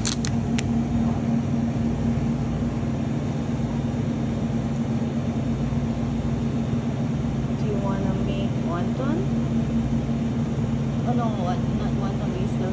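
Steady machine hum of a refrigerated meat display case, a constant drone with a few fixed low tones. A few sharp clicks come right at the start, and faint voices are heard later on.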